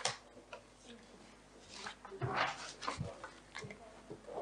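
Quiet meeting-room pause: a sharp click at the start as a conference microphone button is pressed, then scattered faint knocks, rustles and low murmur in the hall.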